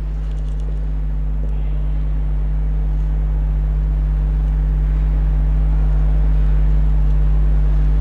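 Steady low electrical hum with a faint even background noise, growing slowly a little louder.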